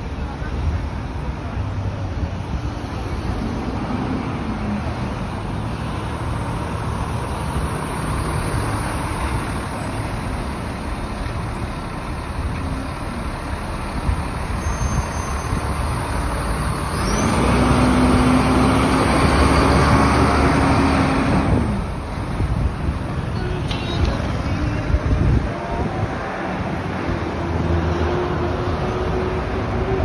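Busy city street traffic: the steady noise of cars and trucks moving and idling nearby. For several seconds past the middle, one vehicle's engine runs louder with a steady hum, then drops away.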